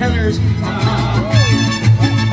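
Mariachi band playing upbeat Mexican folk music, with a steady pulsing bass line under the strings.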